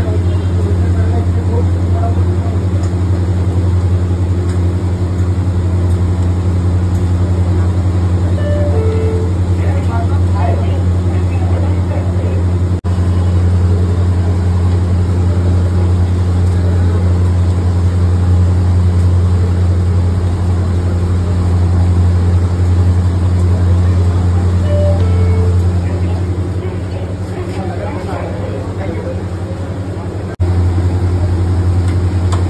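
A steady, loud low droning hum of kitchen machinery, with faint voices in the background; the hum drops somewhat near the end.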